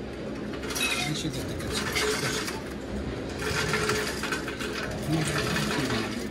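Plastic lid taken from a dispenser stack and pressed down onto a filled paper soda cup, crackling and clicking in two bursts, over a steady low hum.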